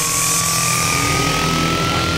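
Electronic build-up riser in a psytrance track: a single synth tone slowly gliding upward over a swelling noise wash, with no beat.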